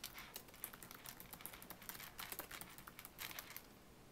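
Faint typing on a computer keyboard: a quick run of key clicks that stops shortly before the end.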